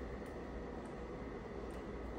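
Low, steady background hiss and hum of a small room (room tone), with a few very faint ticks.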